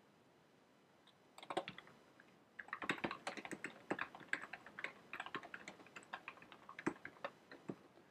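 Typing on a computer keyboard: a few keystrokes about a second and a half in, then a brisk, steady run of keystrokes lasting about five seconds.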